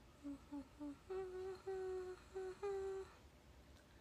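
A young woman humming a short tune with her mouth closed: three short low notes, then four longer notes a little higher, stopping about three seconds in.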